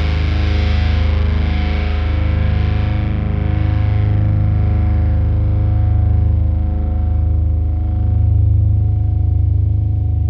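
Alternative metal band's distorted electric guitars and bass holding a final chord at the end of a song: the bright top of the sound fades over the first few seconds while the low notes ring on steadily.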